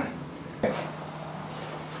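Quiet room tone with a faint steady hum and one brief click about half a second in.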